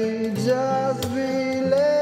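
A man singing long held notes while strumming an acoustic guitar.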